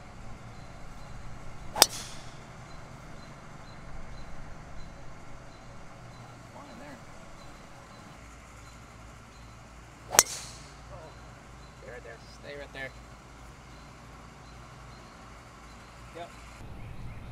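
Two golf balls struck off the tee with drivers: each hit is a single sharp click, the two about eight seconds apart.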